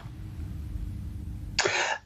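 A low, steady rumble of room noise, then near the end a man's short cough, about half a second long.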